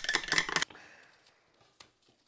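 Rapid crinkling and crackling of a small plastic candy-kit packet being handled or torn open, stopping abruptly about two-thirds of a second in. A faint fading hiss and a single light click follow near the end.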